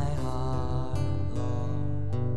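Live worship band music: a man singing long held notes over strummed acoustic guitar, backed by drums and keyboard.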